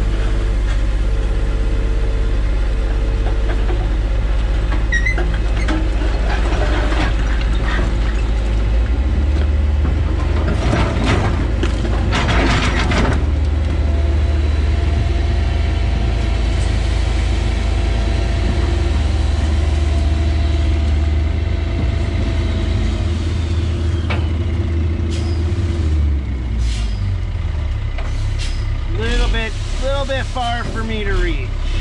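Old Kobelco excavator's diesel engine running steadily, heard from inside the cab, with a dump truck working close by. There is a burst of air-brake hiss about ten to thirteen seconds in.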